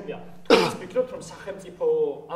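A person clears their throat once, a short sharp burst about half a second in, with quiet talk around it.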